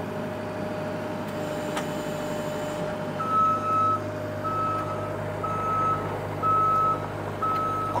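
Skid steer loader's engine running steadily. About three seconds in, its backup alarm starts beeping, about one beep a second, the signal that the machine is reversing.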